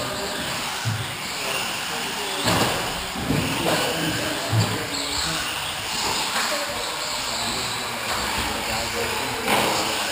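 Indistinct chatter of several people in a large, echoing hall, with a few sharp knocks.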